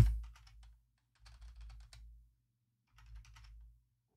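Keystrokes on a computer keyboard, faint, typed in three short runs with pauses between them.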